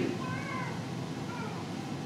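Two faint, short, high-pitched wavering calls over quiet room tone, one about half a second in and one about a second and a half in.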